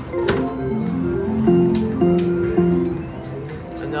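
Quick Hit Super Wheel slot machine's electronic spin sounds: a quick stepping run of synthesized tones with several sharp clicks as a max-bet spin plays out.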